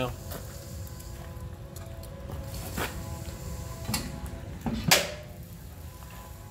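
A few light metal knocks, then a sharp metal clank about five seconds in, the loudest sound: the insulated steel firebox door of a wood-fired smoker being swung shut. A steady low outdoor rumble runs underneath.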